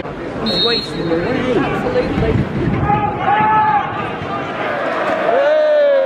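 A referee's whistle blown once, briefly, about half a second in. Then men's voices shout out loud calls across a football pitch over the chatter of a small crowd.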